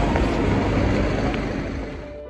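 Steady background noise of a busy covered shopping street, a wash of ambient sound with a strong low rumble, easing off slightly near the end.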